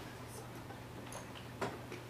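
A few faint, irregular ticks of a stylus tapping and writing on a tablet screen, over a steady low electrical hum.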